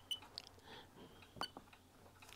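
Near silence with a few faint short clicks, the sharpest about one and a half seconds in: buttons being pressed on a handheld antenna analyzer as its sweep is started.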